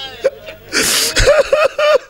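Someone sobbing in grief: a loud sharp breath, then a quick run of short, broken, wavering cries.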